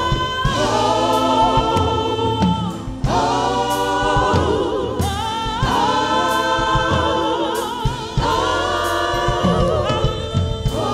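Gospel choir singing long held notes with vibrato, over keyboard and band accompaniment, in phrases of about two to three seconds.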